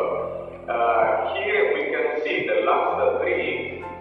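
A man's voice talking, with music underneath and a steady low hum.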